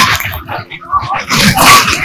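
A woman's voice speaking into a clip-on microphone in short, broken bursts, smeared and distorted by gusts of wind hitting the microphone.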